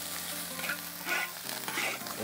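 Metal spatula scraping and tossing egg fried rice around a hot seasoned wok, with the rice sizzling. The scrapes come in short strokes about a second in and again near the end.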